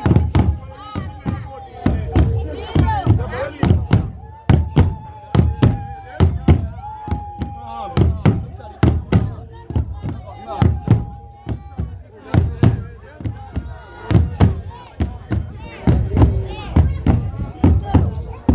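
Sibhaca dance: large drums beaten with sticks and dancers' feet stamping on the ground in a steady heavy beat of about two to three thuds a second. Over it, voices chant with long held notes.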